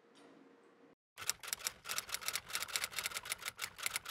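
Typewriter sound effect: a fast run of sharp key clicks, about seven or eight a second, starting about a second in after a moment of dead silence.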